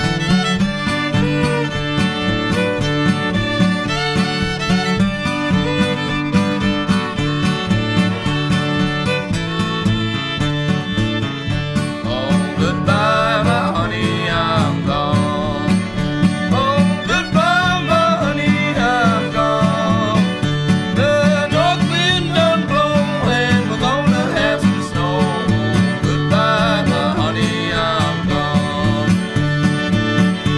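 Old-time string band playing a tune live, a fiddle carrying the melody over a steady picked and strummed rhythm. The lead line grows louder about twelve seconds in.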